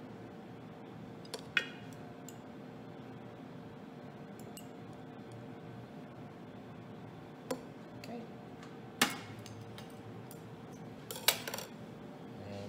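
A few sharp clinks of chopsticks against a ceramic plate and small glass bowls, about four spread out: the loudest soon after the start, about three quarters through, and a small cluster near the end. A steady low hum runs underneath.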